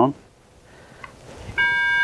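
Vivax-Metrotech VM-850 line locator receiver being switched on: a faint click about a second in, then its speaker starts a steady electronic tone about a second and a half in.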